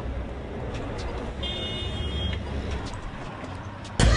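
Street ambience: a low, steady rumble of traffic with a few faint clicks. A brief high-pitched chirp comes about a second and a half in and lasts under a second.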